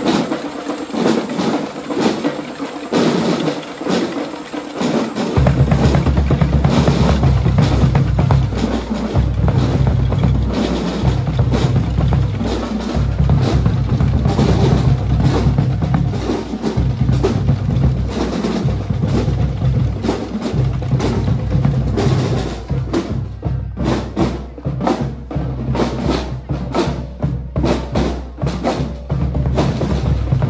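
School drum and lyre corps playing: snare drums keep a fast, busy beat, and about five seconds in a deep bass-drum part comes in underneath and carries on.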